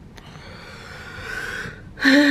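A faint click, then a long breath close to the microphone that grows louder for about a second and a half and stops just before speech.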